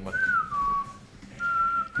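A person whistling: one note that slides downward, a short break, then a second steady note.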